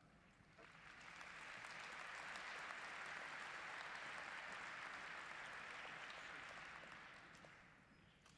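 Audience applauding, swelling up about half a second in and fading out near the end.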